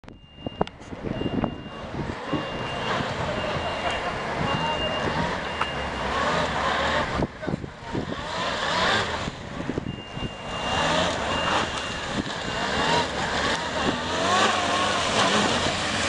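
Police motorcycle engines repeatedly revving up and falling back as the bikes weave through a cone slalom.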